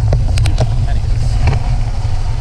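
Wind buffeting the microphone of a bicycle-mounted camera as it rides along a wet road, a loud steady low rumble. Sharp clicks and knocks from the bike rattling over the road surface run through it.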